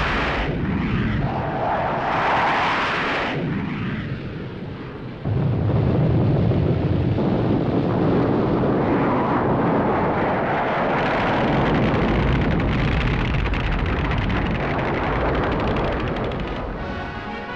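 Loud noise of military jet aircraft, steady noise with a swell in the first few seconds and a sudden jump in level about five seconds in.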